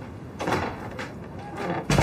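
A hospital room door being worked: the handle and latch clacking about half a second in as it opens, then a sharp knock near the end as the door strikes its frame.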